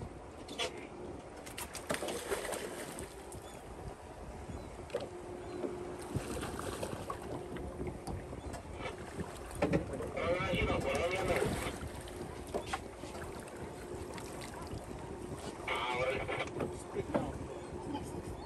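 A boat idling with a steady low tone, water noise and wind on the microphone, while a hooked fish is brought to the rail; raised voices come in about ten seconds in and again near the end.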